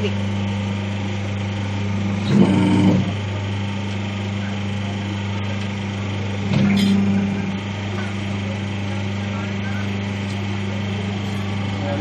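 Two-die paper plate making machine running with a steady low hum, with two louder brief sounds about two and a half and seven seconds in.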